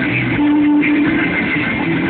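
Rock band playing live, with electric guitar over drums, recorded from among the audience.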